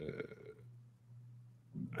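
The tail of a man's drawn-out "euh" hesitation, then a faint steady low hum of room tone, with speech starting again near the end.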